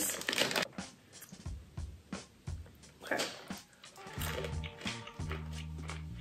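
A plastic snack pouch torn open and crinkled, a dense burst of crackling at first and then a few scattered rustles. From about four seconds in, background music with a steady low bass line comes in.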